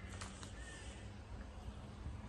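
A bird calling, two short calls in quick succession near the start, over a steady low background rumble.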